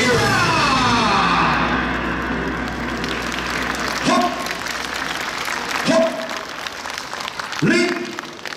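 A yosakoi dance track ends on a falling sweep, followed by applause and three short shouted calls.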